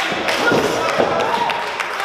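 A few dull thuds from wrestlers' bodies and strikes in the ring, about half a second apart, over shouting and chatter from the crowd.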